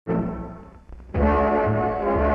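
Brassy orchestral newsreel fanfare starting abruptly with a chord that fades away, then the full brass section coming in loudly about a second later over a pulsing bass.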